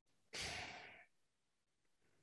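A single breathy sigh from a man into a close microphone, lasting under a second.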